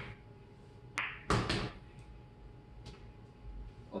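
Pool balls knocking on the table as the cue ball draws back after a draw shot: a sharp click about a second in, a louder knock just after, and a faint click later.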